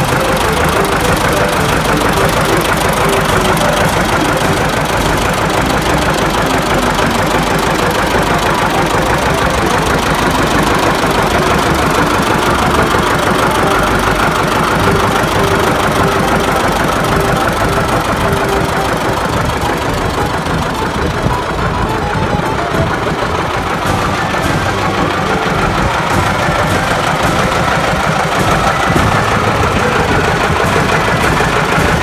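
John Deere 70 Diesel tractor's two-cylinder diesel engine idling steadily and evenly.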